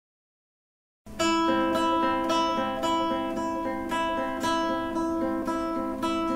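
Nylon-string classical guitar, fingerpicked, playing a slow repeating arpeggio of single plucked notes that ring into one another. It starts about a second in, after a moment of silence.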